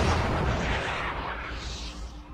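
Anime sound effect of a rumbling, explosion-like blast, a dense noisy wash that fades steadily away, marking the zone in the scene vanishing.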